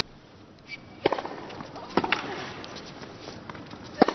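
Quiet tennis court sound between points: a low steady stadium hum with a few soft knocks, the clearest about one and two seconds in.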